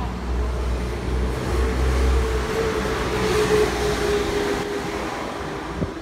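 Giant wooden spinning top turning on its base, a steady rumbling whir with a faint hum that swells and then eases off.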